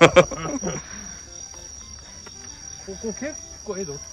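A steady high-pitched chorus of insects singing without a break, like crickets on a late-summer night.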